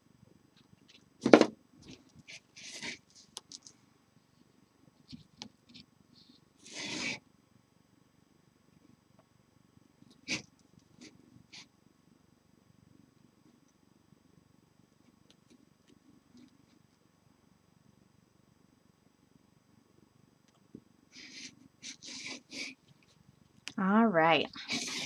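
Burlap fabric on a lampshade being handled and pressed while a hot-glued seam is worked: scattered rustles and a few knocks, the sharpest about a second and a half in and a cluster near the end. A faint low steady sound runs underneath.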